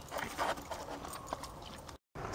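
A border collie and blue heeler mix splashing and pawing in a shallow, muddy creek. A quick run of splashes comes about half a second in, followed by a few lighter paw splashes and sloshes.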